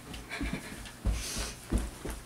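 Footsteps climbing carpeted stairs, a dull thump about every two-thirds of a second, with a person's heavy panting breaths.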